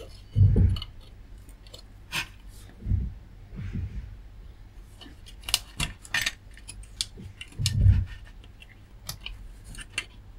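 Handling noise from an amplifier circuit board: a two-wire plastic connector is pulled off its header with small sharp plastic clicks, a cluster of them around five to six seconds in, mixed with a few low thuds of hands and board, about half a second in, at three seconds and near eight seconds.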